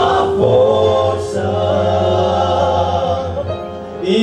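Male vocal group of five singing a gospel hymn a cappella through microphones, holding a chord in close harmony; a new chord comes in right at the start and is sustained, growing softer near the end.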